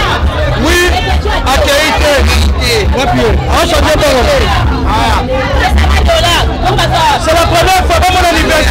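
Hubbub of a party crowd: many voices talking over one another at once, with heavy bass notes from music pulsing underneath.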